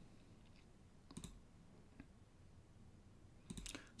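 Near silence, broken by a few faint clicks of a computer mouse: one about a second in, another about two seconds in, and a small cluster shortly before the end.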